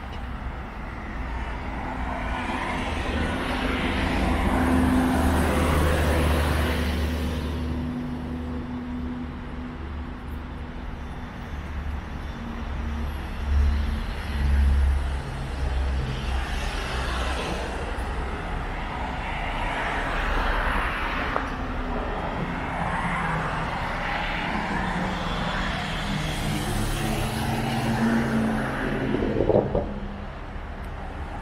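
Road traffic on the street beside the promenade: several cars pass one after another, each a rush of tyre and engine noise that swells and fades, over a steady low rumble.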